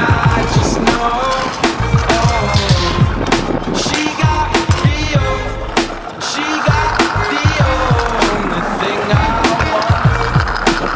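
Stunt scooter wheels rolling on concrete under a hip-hop style song with a sung vocal and deep bass notes that drop in pitch.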